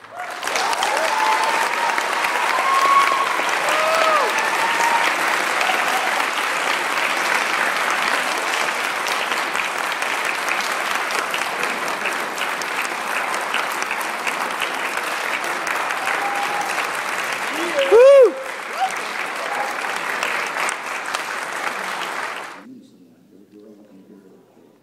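Audience applauding and cheering after a school jazz band's piece, with whoops a few seconds in and one loud shout of cheering about eighteen seconds in. The applause stops abruptly near the end.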